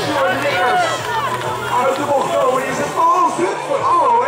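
Speech: continuous, excited race commentary in Dutch from an announcer over a public-address loudspeaker.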